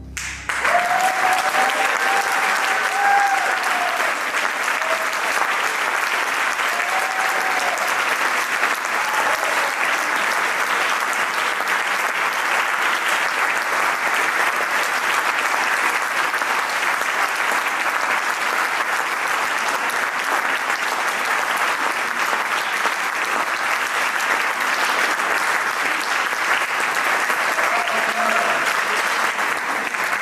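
Audience applause breaking out as the music ends and going on steadily, with a few voices calling out near the start and again near the end.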